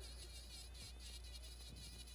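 Faint, wavering high whine of a Dremel rotary tool spinning a small carving burr against pine knot wood.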